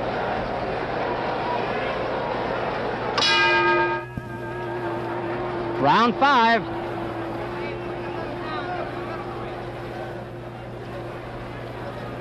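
Boxing ring bell struck once about three seconds in, signalling the end of the round over arena crowd noise; its ringing is cut off abruptly after under a second.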